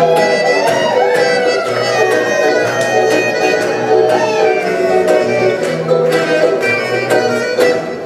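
A live band plays an upbeat acoustic tune on accordion and acoustic guitars, over a steady pulsing bass. A melody line slides up and down in pitch on top.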